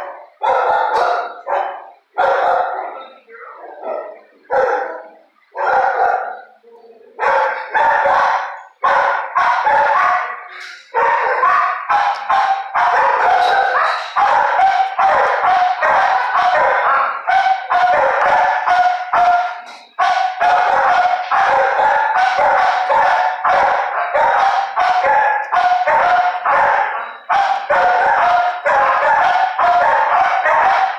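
Shelter dogs barking in a kennel block: separate loud barks for the first few seconds, then from about seven seconds in a near-continuous din of overlapping barks from several dogs.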